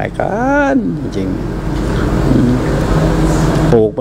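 Noise of a passing road vehicle, building over about two seconds and peaking just before a voice resumes, after a few words of a man's speech at the start.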